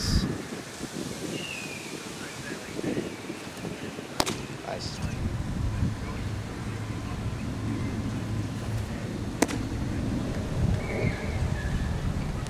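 Wind buffeting the microphone, broken three times by a sharp pop of a baseball hitting a leather glove: once right at the start, then about four seconds in and again about nine seconds in.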